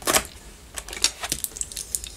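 Hands handling a paper pad on a cutting mat: a sharp tap just after the start, then a few lighter clicks and rustles spread over the rest.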